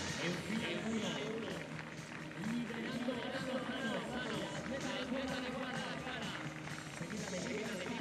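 Stadium background sound under a track race: distant voices and faint music.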